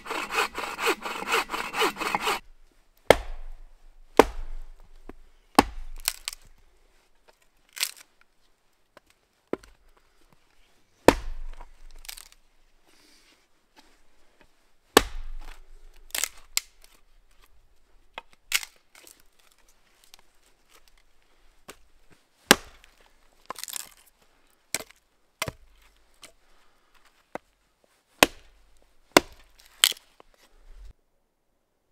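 Bow saw cutting through a dead log with quick, even strokes that stop about two seconds in. Then a small forest axe striking wood in single sharp chops, spaced one to three seconds apart, about seventeen in all, as it splits and trims a log.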